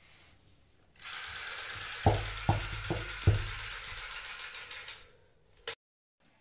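Rapid automatic gunfire lasting about four seconds, with four heavier shots about 0.4 s apart in the middle of the burst, then a single short click near the end.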